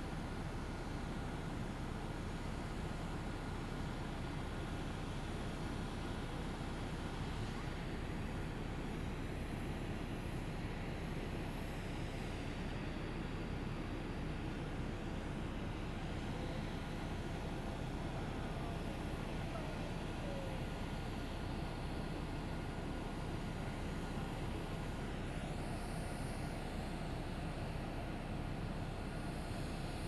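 Steady jet aircraft noise on the airport apron from the parked Air Force One, a Boeing 747-based VC-25A: an even rumble with a thin, constant high whine over it.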